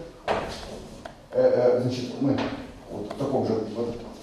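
A man speaking in phrases, lecturing.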